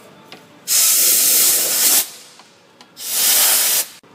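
Two bursts of compressed air from an air blow gun, the first about a second long and the second shorter, near the end. The air is blasting dirt out of the spring-lock garter-spring couplings on the A/C accumulator lines.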